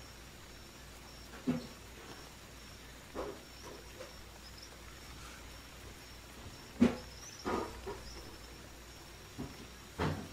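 Faint background ambience track with a thin, steady high tone and a low hum. It is broken by several short, sudden animal-like sounds, the loudest about seven seconds in.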